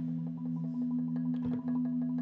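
Marimba played by several players at once: a low two-note chord held steady under soft, quick higher notes.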